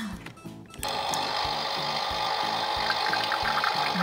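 Toy espresso machine's built-in sound effect, set off by pressing its button: a steady, recorded coffee-machine whirr and hiss starting about a second in and running on.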